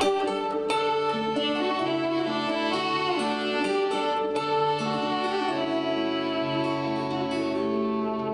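Instrumental intro of a folk-country song: a steel-string acoustic guitar played with a fiddle holding long, sliding notes over it. It starts suddenly at full level and runs on steadily.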